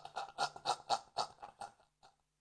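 Quiet, breathy laughter in short rhythmic bursts, about four a second, tailing off.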